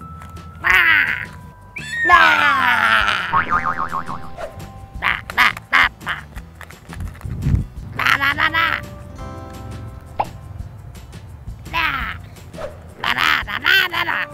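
Background music with short bursts of high, squawky cartoon-voice gibberish from a puppet character, one of them a long falling glide about two seconds in.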